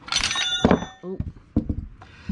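Steel wrench clanking against metal, a loud clatter with a short metallic ring, followed by a couple of small knocks.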